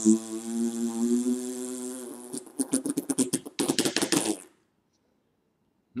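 A man making a mouth noise through puffed, pursed lips: a held, muffled vocal tone that breaks about two seconds in into a rapid run of sputtering lip pops, which stops short well before the end.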